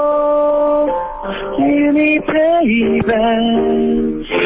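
A man singing a slow song to his own piano accompaniment, heard over a telephone line, so the sound is thin with no high end. He holds long notes and slides down in pitch about two and a half seconds in.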